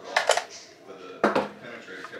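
Sharp metallic clicks and clinks from a DSA SA58 rifle being handled and tilted. A quick cluster of several clicks comes first, then a single click about a second later.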